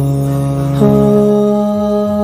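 Background music of wordless hummed vocals in long held notes, stepping up to a higher note a little under a second in.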